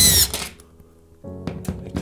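Makita cordless drill driver whirring on a screw in a ceiling plasterboard anchor for about half a second, its pitch falling as it winds down, followed after a pause by a couple of light clicks.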